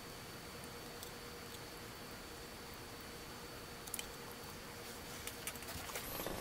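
Faint small clicks and handling noises from a cut-off plastic toothbrush-case funnel being worked in and pulled from a self-watering plant tray's side slot, over a steady low hiss. The clicks come about four seconds in and again near the end.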